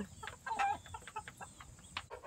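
A flock of hens clucking softly as they feed at a trough, with a few short clucks about half a second in.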